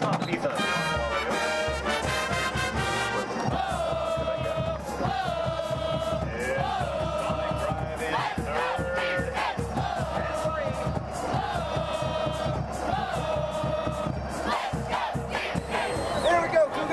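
Stadium marching band playing a brass tune with a steady drum beat, over a cheering football crowd.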